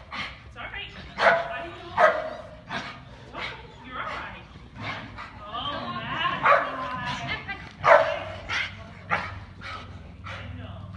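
A dog barking in short, sharp barks, about eight of them at uneven gaps of a second or so.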